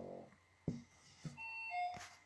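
A faint, short electronic notification chime of two notes falling in pitch, near the end. It comes after a brief closed-mouth hum and two soft clicks.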